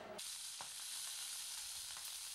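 Pork belly slices sizzling on a grill pan over a portable gas burner: a steady high hiss that starts a moment in.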